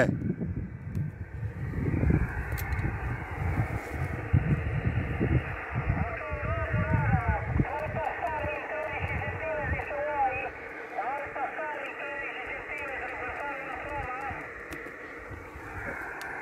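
Radio receiver audio: a distant station's voice, muffled and narrow, over steady receiver hiss. A low rumble on the microphone runs through about the first ten seconds.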